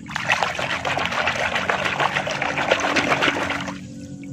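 Water splashing and sloshing as a hand scrubs a small plastic toy figure in a shallow muddy puddle, with dense crackly splashes that stop just before the end.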